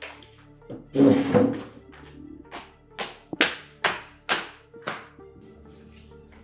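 Background music with a loud burst about a second in, then a run of about six sharp hand smacks, roughly two a second, ringing briefly in the room.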